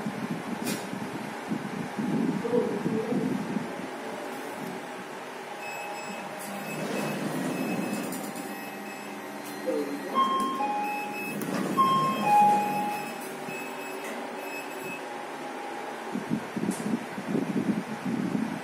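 Fujitec passenger lift stopped at a floor, its car and door machinery humming, with a run of short electronic beeps at several pitches through the middle.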